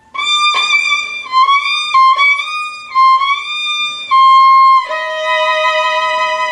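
Solo violin, bowed, playing a slow phrase of separate high notes. A longer held note comes about four seconds in, then a lower sustained note near the end.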